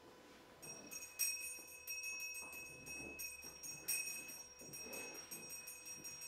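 Altar bells shaken over and over, a jangling ring that starts about half a second in, rung during Benediction with the Blessed Sacrament as the priest blesses with the monstrance.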